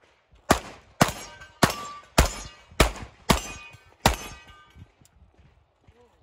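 Seven handgun shots fired in quick succession, about half a second apart, as a competitor shoots a stage. Several shots are followed by a short metallic ring from steel targets being hit.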